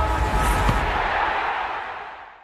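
The end of an electronic intro sting: a noisy whoosh over a low rumble, fading steadily away.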